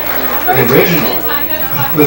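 Indistinct talking: speech that the words cannot be made out of, with more than one voice.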